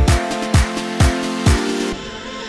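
Background electronic dance music: a deep kick drum on about two beats a second under sustained synth chords. The kick drops out near the end.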